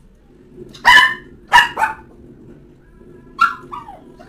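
A small dog barking: three sharp barks close together about a second in, then two more near the end, the last one falling in pitch.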